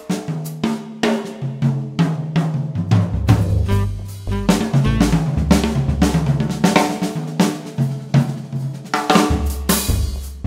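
TAMA STAR drum kit being played in a busy, continuous pattern: rapid stick strokes moving around the toms, with snare, bass drum and cymbals.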